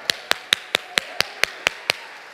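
Nine sharp, evenly timed hand claps, about four and a half a second, from the preacher clapping his hands in rhythm.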